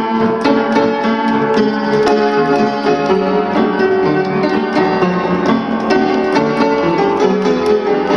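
A 1913 Bellmann upright player piano played by hand, a lively tune with notes struck in quick succession over sustained chords.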